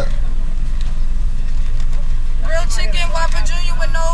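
A car engine idling, a steady low hum heard from inside the car's cabin. A voice starts speaking a little past halfway.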